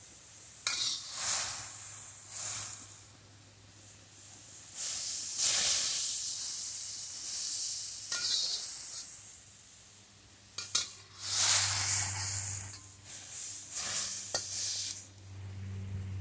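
Broccoli sizzling in a little bubbling water in a hot steel wok, stirred with a metal wok spatula: the hiss swells and fades with each stir, with a few sharp clinks and scrapes of steel on the wok. A low hum runs underneath, louder near the end.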